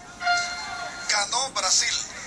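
Sound of a baseball broadcast played through a TV speaker: a man's voice talking, thin and without bass, with music under it.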